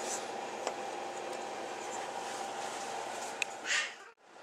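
A few faint clicks and a short scrape of metal parts handled on a Volkswagen Type 4 engine block as a cylinder barrel is pushed the last bit home onto its piston, over a steady low hum.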